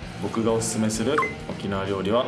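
A man speaking over light background music, with a short rising electronic blip, a sound effect, just over a second in.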